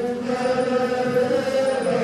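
Hindu devotional mantra chanting, a voice holding long, steady sung notes without a break.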